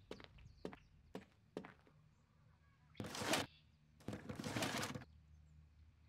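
Four light clicks or knocks in the first second and a half, then two short rough scraping or rustling noises, the second one longer, about three and four seconds in: objects being handled and moved.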